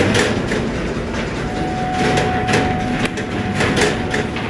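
Hammer striking a steel-wire cage panel against a small steel block: several irregular metallic knocks over steady workshop noise.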